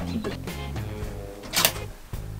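Background music, with a single sharp clack near the end from a wooden drawer on its metal soft-close tracks as it is worked in the cabinet.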